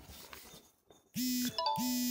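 A OnePlus phone's incoming WhatsApp message alert: two short, equal tones of one steady pitch, a fifth of a second apart, starting just after the middle, with a brief higher chime over the second.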